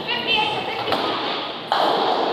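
Bowling alley din: a bowling ball thuds onto the lane as it is released, followed by two more sharp thuds, the last and loudest near the end with a clattering tail, over background chatter.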